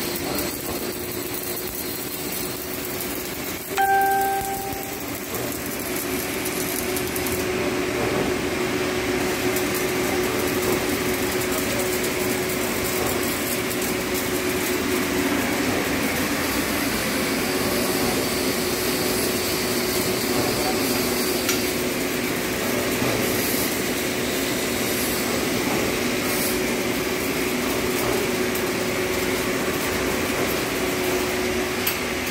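Steady workshop noise: a constant electrical hum and the whir of a large pedestal fan, with arc welding in the first seconds. About four seconds in, a short, loud beep-like tone sounds.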